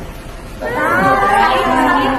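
A high-pitched, wavering wailing voice, starting about half a second in.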